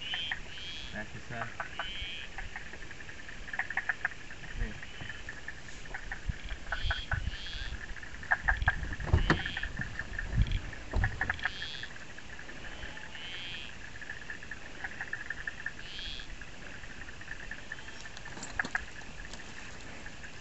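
Quiet night chorus of small calling animals: a steady high thin drone with short chirping calls every second or two. Scattered clicks and a few low knocks and rustles of movement come through, most of them in the middle.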